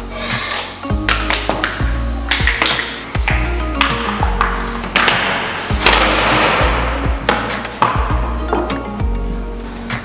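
Background music with a steady beat and a bass line.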